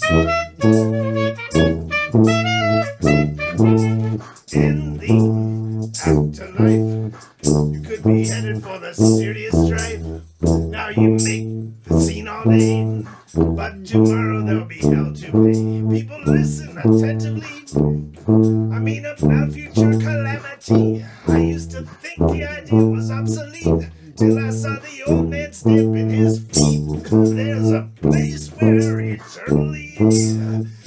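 Jazz played on brass and drums: a low brass bass line repeating one short figure in a steady rhythm under regular drum hits, with a higher horn melody over it in the first few seconds.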